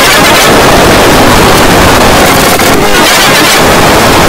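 Very loud, steady, heavily distorted noise that fills every pitch range, with no clear tones or rhythm: an overdriven, clipped audio track.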